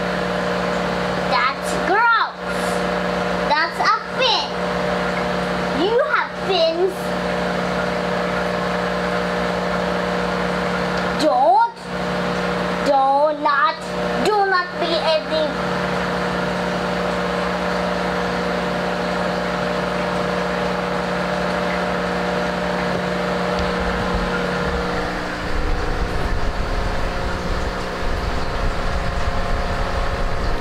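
A steady mechanical hum runs throughout, with a person's voice in short stretches during the first half. A low rumble comes in about three-quarters of the way through.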